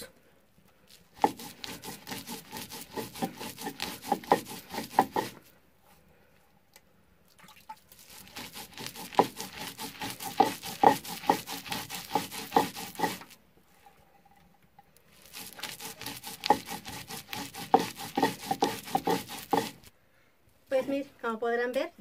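Stone mano (metlapil) pushed back and forth over a stone metate, crushing cooked nixtamal corn kernels on the first, coarse breaking pass: a rough scraping full of small crunches. It comes in three spells of about four to six seconds each, with short pauses between them.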